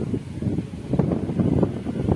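Wind buffeting an outdoor microphone: an irregular low rumble with a few gusty surges.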